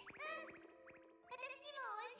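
High-pitched, sing-song female cartoon voice from an anime, speaking in Japanese, heard twice with a short pause between, over faint background music.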